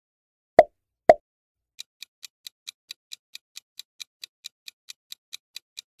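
Two quick pop sound effects about half a second apart, followed by a quiz countdown timer's ticking sound effect: light, even clock-like ticks at about four to five a second.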